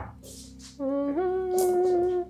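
A voice humming two long notes, the second a step higher, beginning nearly a second in. A short click comes at the very start.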